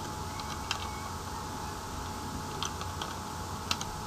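Computer keyboard typing: a handful of separate keystrokes in small clusters as a word is typed, over a faint steady hum.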